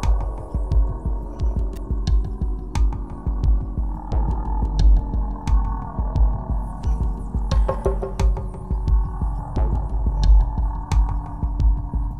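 Ambient-trance electronic music: a deep, uneven pulsing bass throb under held synthesizer tones, with scattered sharp clicks and a brief downward pitch slide about three-quarters of the way through.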